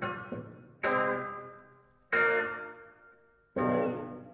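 Loud, bell-like chords struck on a grand piano, three in a row about a second and a half apart, each left to ring and die away.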